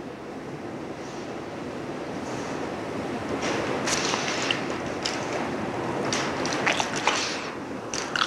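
Room noise in a lecture hall on an old tape recording: a steady hiss that slowly swells, with scattered rustling and light knocks through the middle seconds.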